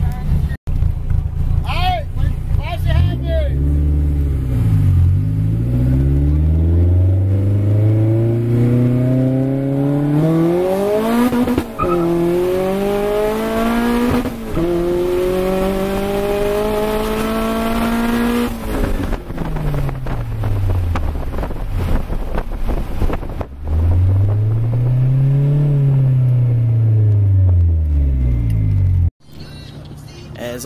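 Turbocharged Honda Prelude engine heard from inside the car, pulling hard down a drag strip: the pitch climbs for about fifteen seconds with short breaks at the upshifts, then drops away as the throttle comes off. Near the end the engine revs up once and falls back.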